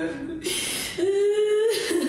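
A woman crying and wailing in grief: a breathy sob, then one long, slightly rising cry held for most of a second.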